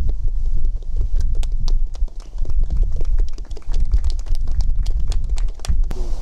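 Irregular sharp clicks and knocks, several a second, over a steady low rumble.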